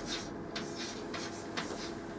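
Chalk writing on a blackboard: several short strokes as digits are written out.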